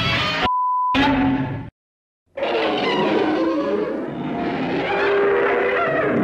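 A censor bleep, one steady beep about half a second long, blots out the swear word in a monster character's vocalized line about half a second in. After a brief silence, another creature's voiced line runs on through the rest.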